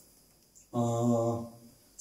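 A man's voice intoning one steady, held note, chant-like, for a little under a second, starting about three-quarters of a second in.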